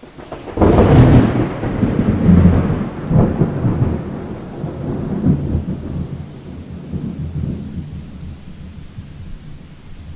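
A deep, rolling thunder rumble. It breaks in sharply about half a second in, swells again a couple of times, and slowly dies away.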